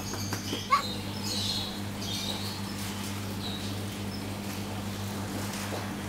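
Steady low electrical hum, with a short sharp squeak about a second in and faint high chirps soon after.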